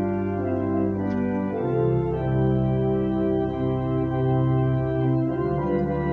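Organ playing a hymn tune through once, as an introduction before it is sung, in slow held chords that change every second or so.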